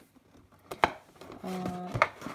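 A single sharp tap of an object handled on a desk a little under a second in, then a short hum from a woman's voice and another tap at the end.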